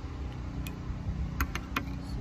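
A neighbour's lawn mower engine runs steadily in the background, with low wind rumble on the microphone. A few light clicks come in the second half.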